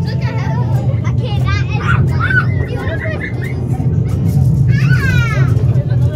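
Steady low rumble of a farm park ride vehicle in motion, with children's high-pitched voices calling out over it and one long, falling high call about five seconds in.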